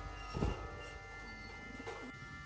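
Faint background music with held tones, and a soft thump about half a second in.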